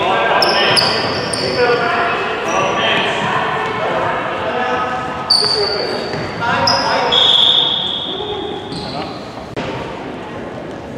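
Sounds of basketball play on a hardwood gym floor: a ball bouncing, shoes squeaking in several short high-pitched squeals, and indistinct voices of players and onlookers echoing through the large hall.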